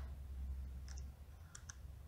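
A few faint taps of fingernails on a phone's touchscreen, over a low steady hum.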